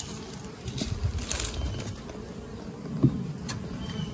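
Honeybees buzzing steadily around an open bee yard hive, with a low rumble in the first half and a single sharp knock about three seconds in as the hive lid is handled.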